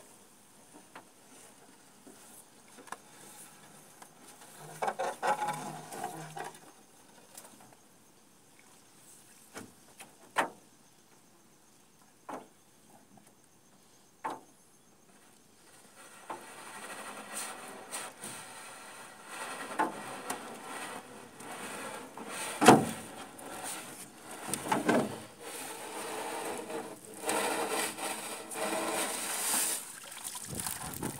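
A cast net being hauled back aboard an aluminium boat: water streams and drips off the mesh as it comes out of the river, rising from about halfway, with a few sharp knocks scattered through, the loudest a little past two-thirds of the way.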